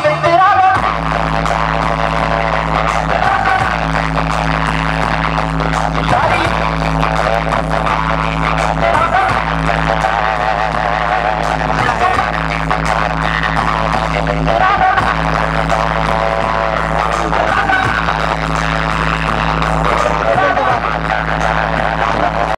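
Loud dance song with a sung melody and heavy, steady bass, played through a truck-mounted DJ speaker stack. The bass notes break off briefly every second or two.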